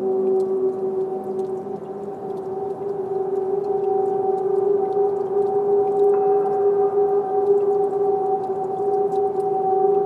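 Ambient electronic drone music from live synthesizers and effects: a few held tones sustain steadily. The lowest tones drop away about two seconds in, and a higher tone joins about six seconds in.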